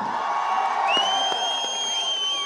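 An audience cheering. About a second in, a long, steady, shrill whistle rises out of the crowd noise.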